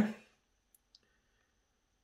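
Two faint, short clicks about a fifth of a second apart, from tiny model parts being handled during super-gluing; otherwise near silence.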